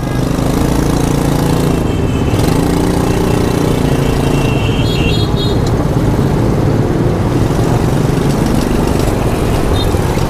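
Small 50 cc motorbike engine of a homemade scrap-built mini car running steadily as the car drives along, with street traffic around it. Two brief high squeals come about two and five seconds in.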